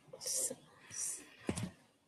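A person whispering quietly over a webcall microphone: two short hissing syllables, then a brief sharper sound about one and a half seconds in.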